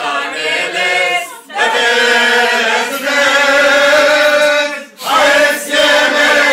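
A small group of voices singing an Armenian song together, unaccompanied, in long held phrases with brief breaks about a second and a half in and again about five seconds in.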